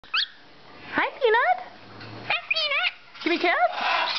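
Hahn's macaw vocalizing: a brief rising chirp, then a run of short warbling calls whose pitch slides up and down, roughly one a second.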